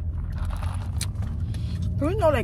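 Steady low rumble inside a car's cabin, with a short click about halfway through.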